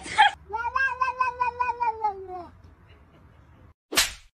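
A cat yowling: one long, wavering meow of about two seconds that rises slightly and then falls away. A sharp click comes near the end.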